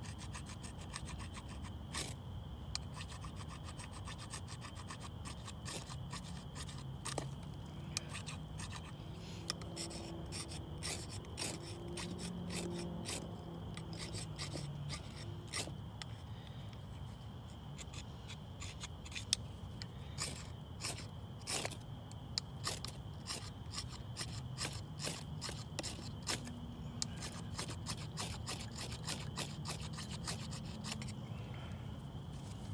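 A knife blade scraped repeatedly along a fire-starter rod to throw sparks onto bark tinder. The strokes are short and rasping, coming irregularly and sometimes in quick runs.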